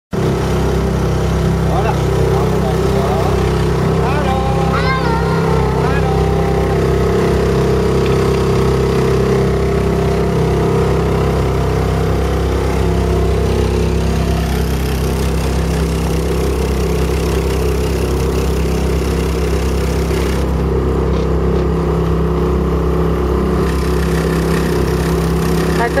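Small motorboat's engine running steadily under way, holding one even pitch throughout.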